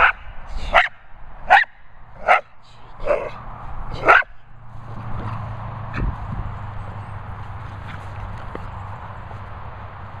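Small terrier barking in play at its ball: six sharp barks, about one a second, stopping after about four seconds. A low steady rumble follows, with a single knock near the middle.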